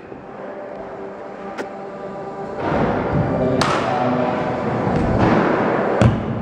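Background music, with a scooter's wheels rolling over a skatepark ramp, growing louder from about two and a half seconds in, and a sharp click about a second later.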